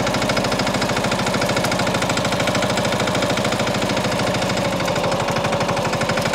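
Mahindra Yuvraj NXT compact tractor's single-cylinder diesel engine running steadily under way in second gear, with a fast, even chugging pulse.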